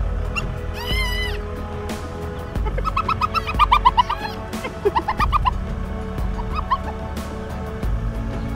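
Background music with spotted hyena calls over it: a wavering whine about a second in, then a quick run of short squeaky notes in the middle.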